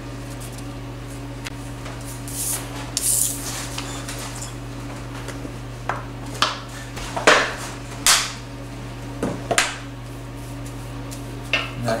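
Scattered light clinks and knocks of a small glass vanilla-extract bottle and utensils against glass mixing bowls as vanilla is measured in, the loudest two about seven and eight seconds in. A steady low electrical hum runs underneath.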